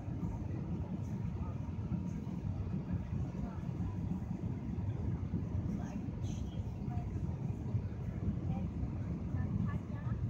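Steady low rumble of jet airliner cabin noise on final approach, the engines and airflow over the extended flaps heard from a window seat.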